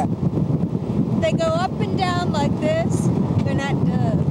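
Wind buffeting the microphone over the steady rumble of a moving open vehicle. A woman's high voice breaks in with several short bursts from about a second in, and once more near the end.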